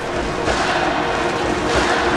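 Cinematic intro music building up: a dense, rising swell over steady held tones and a low rumble, growing louder throughout.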